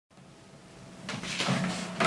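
Rustling and knocking handling noise as a person moves close past the microphone with an electric guitar, getting louder about a second in, over a low steady hum.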